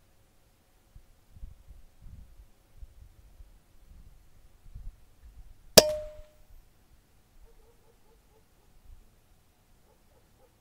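A single sharp air rifle shot about six seconds in, with a short ringing tone after it. Faint low handling noises come before it.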